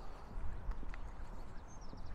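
Footsteps on a paved stone path, a few irregular soft steps, with faint bird chirps starting near the end.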